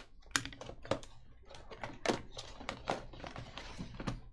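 Plastic shrink wrap crinkling and tearing off a sealed trading-card hobby box, with a run of sharp cardboard clicks and taps as the box is opened and its small boxed packs are handled. The loudest click comes right at the start.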